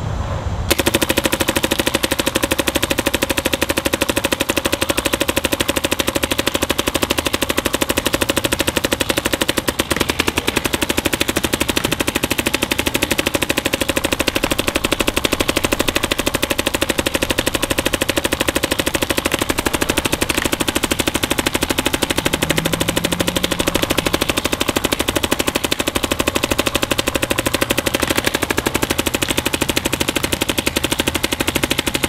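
Machine Vapor electronic paintball marker firing rapid, nearly unbroken strings of shots, fed by a Virtue Spire loader. The marker is being shot steadily to measure how many shots a full high-pressure air tank gives, with a brief lull about ten seconds in.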